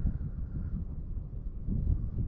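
Gusty wind buffeting the microphone: a low rumble that swells and eases, with a stronger gust near the end.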